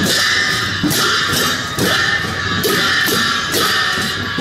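Several pairs of hand cymbals clashed together, about once a second, each clash ringing on into the next.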